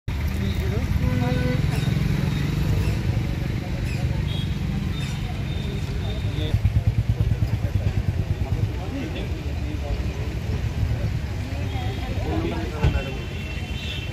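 Voices of people talking in the background over a steady low rumble, with a stretch of fluttering rumble around the middle.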